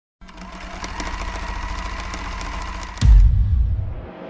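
Intro sound effect for the logo: a rapid mechanical rattle with a steady high tone builds up, then a deep boom hits about three seconds in and fades away.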